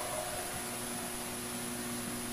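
Steady hiss with a faint, even hum: the room tone of a large church, heard over a broadcast feed, with no other event.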